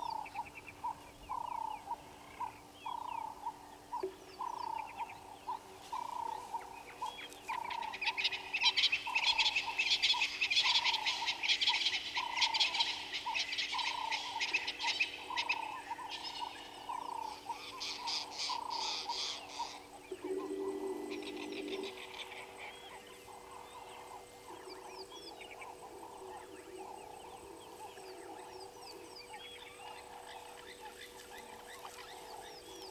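Outdoor animal calls: a short call repeated about one and a half times a second for the first two-thirds, joined from about eight to twenty seconds in by a loud burst of rapid, dense chirping. After that only quieter, scattered chirps are left.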